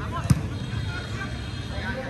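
A football struck once, a sharp thud about a third of a second in, with players' voices calling across the pitch.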